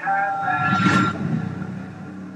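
Music-video soundtrack between beats: a rushing whoosh, with held synth tones under it, swells to a peak about a second in and then dies away.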